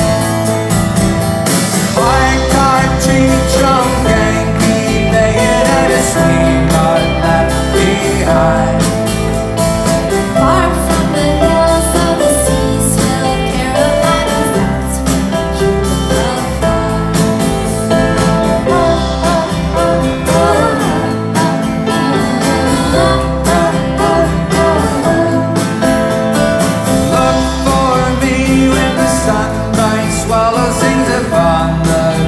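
Live band playing a folk-rock song: strummed acoustic guitar, electric guitar, bass and drums, with singing over them, heard from the audience in a large hall.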